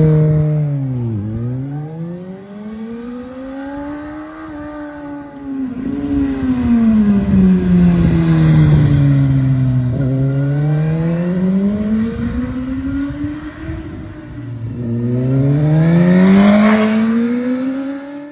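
Suzuki GSX-S1000S Katana's inline-four engine running through a Yoshimura aftermarket exhaust, revving up and down as the motorcycle is ridden. The pitch swings up and down several times, with sharp drops about a second in and about ten seconds in, and climbs again near the end.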